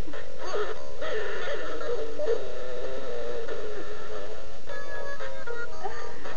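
Big Mouth Billy Bass animatronic fish playing its recorded song through its small built-in speaker: a singing voice over music.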